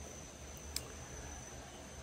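An insect, such as a cricket, calling on one steady high note without a break, with a single faint click just under a second in.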